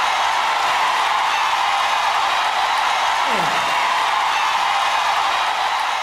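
Studio audience applauding steadily, starting to die away near the end.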